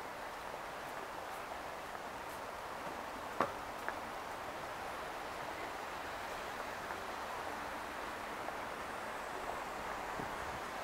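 Steady outdoor city background noise, with a sharp click about three and a half seconds in and a fainter one half a second later.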